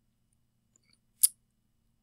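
Quiet room with a faint steady hum, broken once about a second in by a single short, sharp click.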